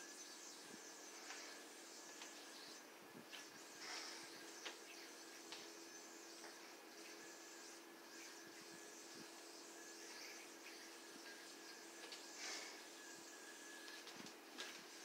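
Near silence: faint room tone with a steady low hum, and a few soft clicks and swishes as a metal yo-yo is thrown and worked on its string.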